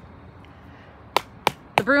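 Rubber mallet striking the top of a broom handle to drive it into the ground as a stake: three sharp knocks, about a third of a second apart, starting a little over a second in.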